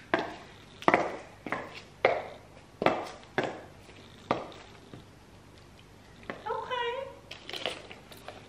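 Chunky platform high heels striking a ceramic tile floor: about seven sharp footsteps, roughly half a second to a second apart, each with a short ringing tail in the room. The steps stop about four and a half seconds in.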